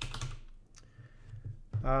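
Computer keyboard typing: a quick run of keystrokes in the first half second, then it stops.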